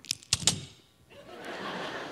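Audience laughing: a soft wash of laughter that swells up about a second in, after a few short sharp clicks at the start.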